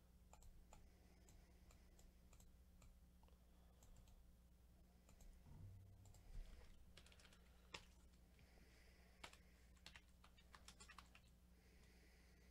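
Near silence: a low steady hum with faint, scattered clicks and taps, coming more often in the second half.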